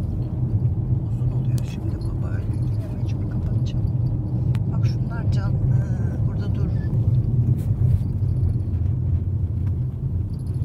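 Steady low rumble of a car's engine and tyres heard from inside the cabin while driving on a rough, patched country road.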